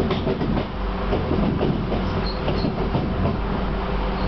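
A Class 323 electric multiple unit heard from inside the carriage while running: a steady hum from the train under a rapid, irregular clatter of wheels over the track joints.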